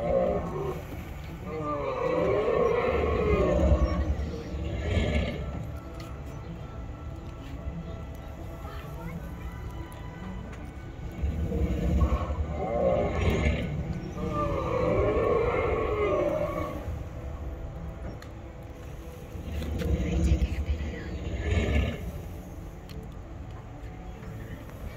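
Recorded dinosaur roars and growls played by animatronic Tyrannosaurus rex and Triceratops figures, coming in three loud bouts with quieter low rumbling between, as a repeating sound loop.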